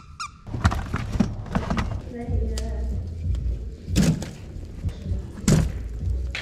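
Logs being handled on a fireplace grate: several sharp knocks and thunks over a low steady rumble from the burning fire.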